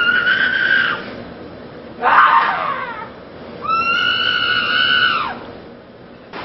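Three long, high-pitched screams, each lasting about a second. The middle one is rougher and falls in pitch.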